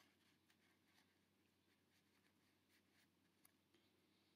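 Near silence, with a few very faint ticks of paper tags being handled.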